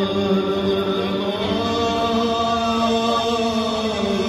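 Live raï concert: a male singer holds long drawn-out vocal notes over the band, the pitch sliding about halfway through.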